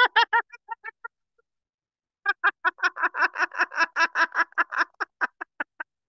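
A man laughing hard in a high-pitched cackle of rapid 'ha' pulses: a short burst that fades out within the first second, then a longer run of about six a second from about two seconds in until near the end.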